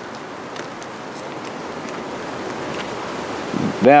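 Electrical tape being pulled off the roll and wrapped around a bundle of wires, a steady crackling hiss that grows slightly louder.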